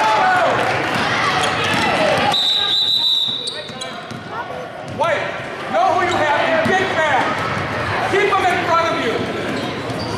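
A referee's whistle sounds one steady, shrill blast about two and a half seconds in, stopping play for a foul; the players then line up for free throws. Before and after it come voices calling out across a reverberant gym, along with the sound of a basketball bouncing.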